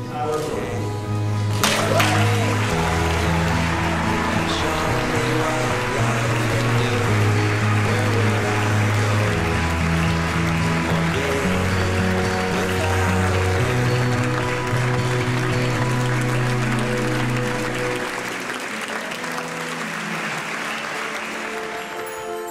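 A congregation applauding and cheering over music with long held low notes; the applause thins out near the end.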